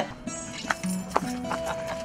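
Acoustic guitar being played, with a couple of sharp taps about half a second apart near the middle.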